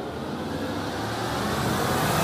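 A whoosh sound effect: a noise swell that grows steadily louder, building up to the next hit of the intro music.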